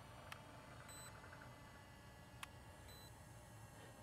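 Near silence, with two faint short electronic beeps about two seconds apart and a couple of faint clicks.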